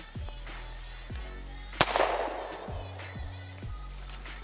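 A single gunshot bang from a prop handgun in a staged shooting, a sharp crack about two seconds in with a trailing echo, over background music.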